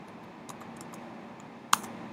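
Typing on a computer keyboard: scattered light keystrokes, with one sharper, louder click near the end.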